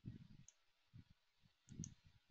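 Faint computer mouse clicks, two or three small sharp ticks, with a few soft low thumps as a chart window is dragged across the screen.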